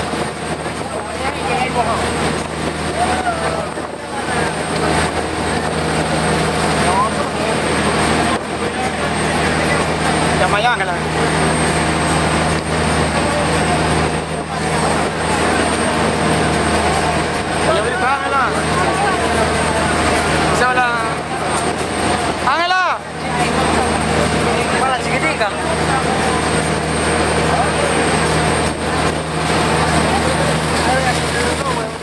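A passenger boat's engines run steadily at speed, with a strong wind rush over the open deck and the microphone. Passengers' voices sound over it, with a few rising and falling calls from about 18 to 23 seconds in.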